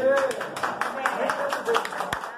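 A small group of people clapping by hand, a quick run of separate claps, with voices calling out over them.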